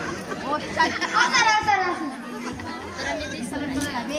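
Speech only: several voices talking over one another, loudest in the first two seconds.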